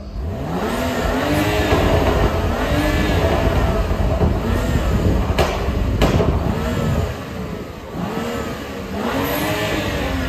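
BMW 2 Series coupe with an M Performance exhaust, its exhaust flap open, revved hard again and again, the engine note climbing and falling with each blip. Two sharp cracks come a little past halfway, and there is a brief lull before a last rev near the end.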